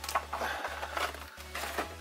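Faint rustling and light taps of foil booster packs and plastic blister packaging being handled and set on a table, over quiet background music.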